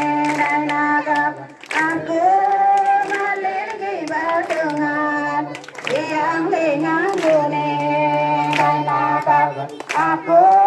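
A crowd singing a hymn together, with women's and children's voices prominent, in phrases of long held notes, while the singers clap their hands.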